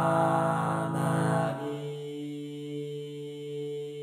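Four-part male chorus sung a cappella by Vocaloid voice synthesizers, holding chords. About one and a half seconds in, the full loud chord gives way to a quieter, thinner held chord.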